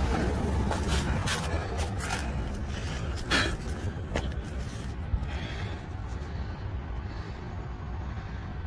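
Handling noise from a handheld phone being moved about: a steady low rumble with a few light knocks and clicks, mostly in the first half and one more about three and a half seconds in.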